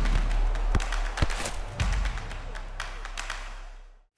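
Sound-effects sting for an animated logo: a few sharp thuds and taps, like a football bouncing, over a steady noisy backdrop and a low rumble, all fading away near the end.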